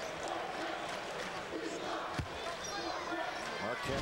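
Arena crowd murmur during a basketball game, with a basketball bouncing once on the hardwood about two seconds in and a few short high sneaker squeaks just after.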